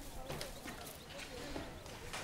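Faint footsteps on a hard floor, with faint voices in the background.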